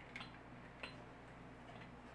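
A few faint, sharp clicks and taps from a plastic squeeze bottle of chocolate syrup and a small glass being handled as syrup is squeezed onto the glass, over a low steady room hum.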